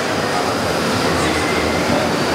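Steady, fairly loud background noise, an even rumble and hiss with no distinct events.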